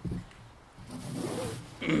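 Handling noise from a table gooseneck microphone: a short low knock at the start, then a rasping rub as it is moved. A man coughs near the end.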